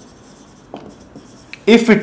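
Marker pen writing on a whiteboard: a few faint, short strokes. A man's voice starts speaking near the end.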